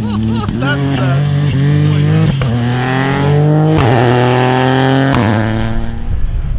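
Ford Fiesta rally car's engine revving hard as it powers out of a loose-surface slide. Its pitch climbs in two long pulls through the gears, split by a sharp crack at a gear change. Near the end it gives way to a duller, steady noise.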